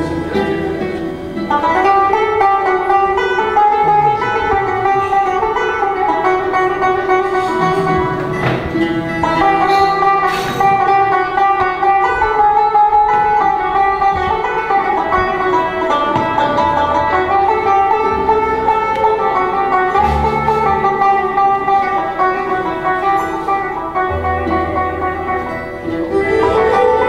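Instrumental passage of Algerian chaabi music with no singing: a plucked banjo plays a busy melody over other string instruments, with low bass notes coming in now and then.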